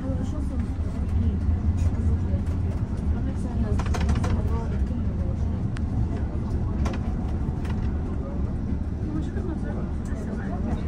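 Inside a moving Istanbul tram: the steady low rumble of the tram running on its rails, with a few brief clicks about four and seven seconds in, and passengers' voices in the background.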